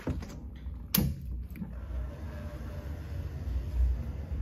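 Wind buffeting a phone's microphone, a low rumble that swells near the end, with a single sharp click about a second in.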